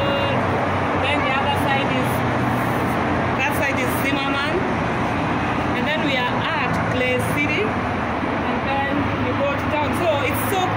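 Steady traffic noise from a busy multi-lane highway below, with voices talking over it.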